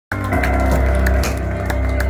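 Live hard rock band playing the instrumental opening of a song: loud, bass-heavy sustained chords with drum hits cutting through.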